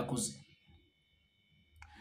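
A man's voice trails off, then near silence with a single short click just before he speaks again.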